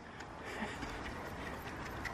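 Faint, steady low background noise with a few soft scuffs of a horse's hooves shuffling in arena sand as it turns on the spot in a spin.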